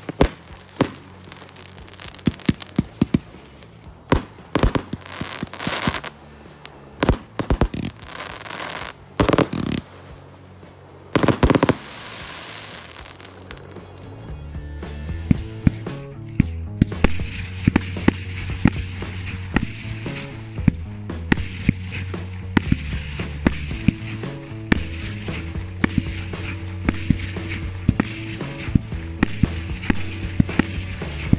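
A 56-shot 30 mm firework cake firing: a run of sharp bangs from the shots bursting, one every second or so, some with a longer hissing tail. About halfway through, background music with a steady low beat comes in, and a dense patter of quicker pops carries on under it.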